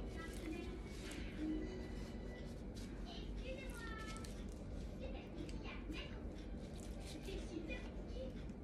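Faint, indistinct background voices, with soft handling sounds as raw minced-meat rolls are picked up and set down in a frying pan.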